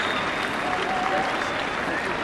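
A large audience applauding steadily, with a few voices calling out over the clapping.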